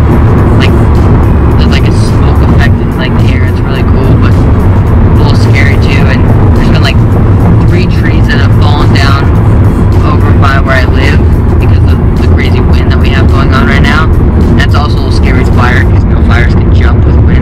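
A voice singing with music inside a moving car's cabin, over a steady low road rumble from the car.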